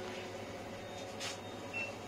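Store ambience: a steady background hum of the shop floor, with a short noise a little past a second in and a single brief high beep near the end.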